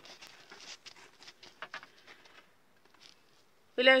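Faint rustling and light crackly ticks of hands handling freshly baked round loaves of bread, dying away after about two and a half seconds.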